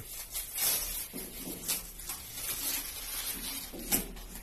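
Self-adhesive foam wall panel being handled against the wall: irregular rustling and crackling of the foam sheet and its backing, with a sharper crackle near the end.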